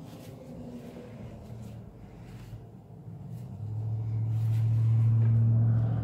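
A steady low hum that builds up over the second half and is loudest near the end.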